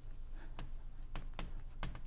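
Chalk writing on a blackboard: a few sharp, irregularly spaced taps and clicks as the chalk strikes the board.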